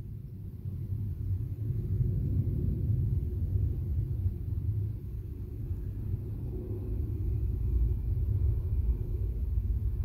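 A steady, low background rumble with no distinct knocks or clicks, growing a little louder after the first couple of seconds.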